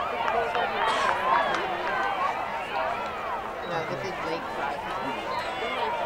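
Many overlapping voices calling and shouting at once, from girls' lacrosse players on the field and people on the sidelines.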